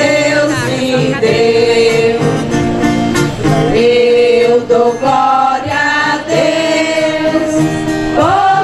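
Religious hymn sung by a choir of voices with instrumental accompaniment, in slow, long-held notes.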